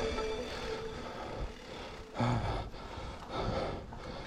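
Background music fades out in the first second, leaving the ride's own sound: a steady rushing noise from the moving mountain bike on a forest dirt trail, with two louder puffs about two seconds and three and a half seconds in.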